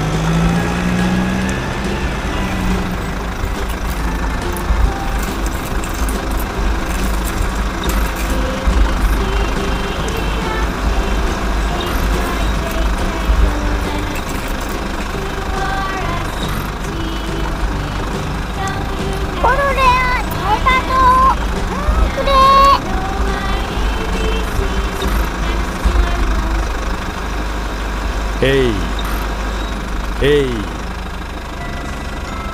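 A low, steady engine-like rumble standing in for a toy bulldozer being driven by hand, with short squeaky voice-like glides about two-thirds of the way in and again near the end.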